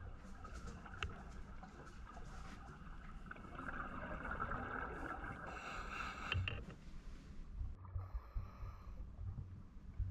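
Faint, muffled underwater sound on a diver's camera: scuba regulator breathing, with a hissing inhale from about a third of the way in to just past halfway, and low bubbling rumbles of exhaled air near the end.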